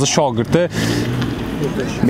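A car driving past close by, a steady rush of engine and tyre noise that fills the gap after a man's voice breaks off about two-thirds of a second in.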